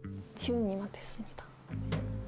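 Soft background music with guitar and a steady bass line, with a brief stretch of Korean speech about half a second in.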